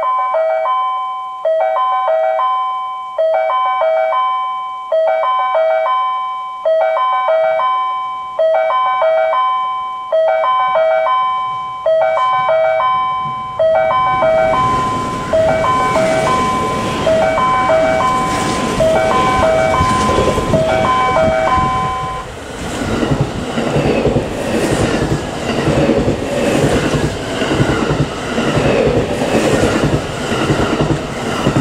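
A platform warning chime plays the same short melody about every second and three-quarters, stopping about two-thirds of the way in. Under it a rushing noise grows as a 681/683-series limited express electric train approaches, then the train passes through at speed with a loud rush and rapid wheel clatter over the rail joints.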